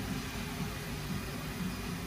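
Steady background hiss with a faint low rumble inside a parked car with the ignition on and the engine off; no distinct sound stands out.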